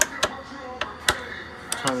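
A few sharp clicks and knocks, about six in two seconds, from handling the seized Kawasaki KX100 two-stroke engine. The rod is seized under the piston, so the crank won't turn over.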